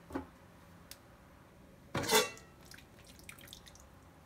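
Large aluminium stockpot lid handled through a towel and lifted off a pot of hot dye water, with one sharp metallic clank and a brief ring about two seconds in, then a few faint drips.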